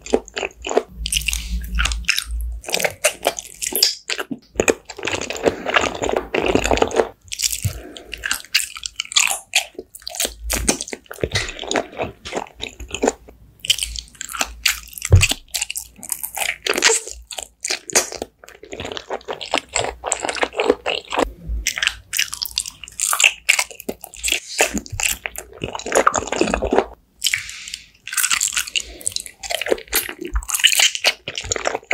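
Close-miked ASMR eating: biting and chewing food. It is a dense, irregular run of sharp crunches and clicks, with a couple of longer chewing stretches.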